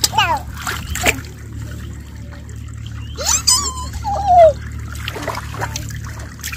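Shallow flowing water splashing and trickling around children's feet and hands as they wade and feel for fish. A few short, high children's cries break in, the loudest one falling in pitch about four seconds in.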